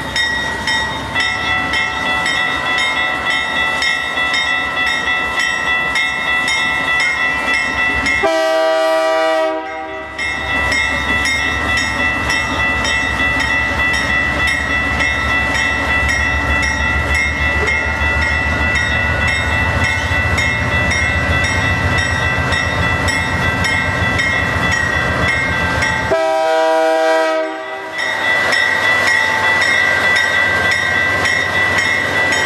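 Canadian Pacific freight train's lead GE ES44AC diesel locomotive and trailing units passing at low speed, engines rumbling louder as they draw near. The horn sounds two blasts of about two seconds each, one about eight seconds in and one near the end. A steady high-pitched ringing tone runs throughout.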